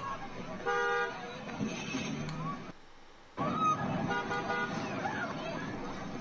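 Street sound from a phone video of a blast site: a car horn sounds briefly about a second in, over traffic noise and voices. The sound cuts out briefly near the middle, then the horn-like tones and voices return.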